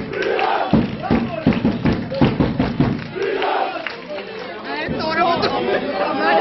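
A crowd of Olympiacos supporters shouting and chanting together, with a regular beat of sharp strikes under the voices through the first half.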